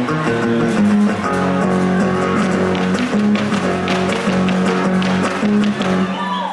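Son huasteco music on strummed guitars, the jarana and huapanguera of a trío huasteco, with a steady low bass line under the chords.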